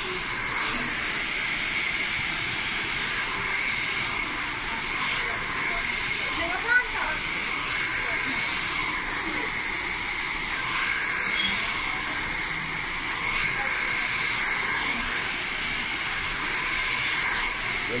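Hand-held hair dryer running steadily: a constant rush of air with a high motor whine. One short, sharp, louder sound about seven seconds in.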